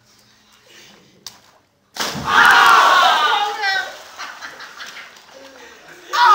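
A body landing hard in a belly slam, a sudden thud about two seconds in, followed at once by loud shouting and cheering from a group of young men that fades over the next couple of seconds.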